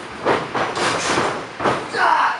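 Two wrestlers grappling and shifting their feet on a wrestling ring's canvas, giving a rumbling, shuffling noise that comes in uneven surges.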